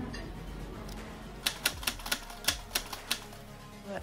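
Soft background music. About one and a half seconds in, a quick, irregular run of about nine sharp clicks comes in and lasts under two seconds.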